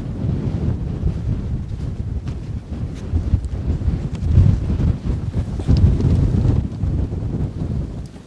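Strong wind buffeting the microphone: a loud, gusty low rumble that drops away at the end.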